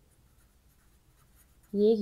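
Faint sound of a felt-tip marker writing on paper as a word is written out by hand. A woman's voice starts speaking near the end.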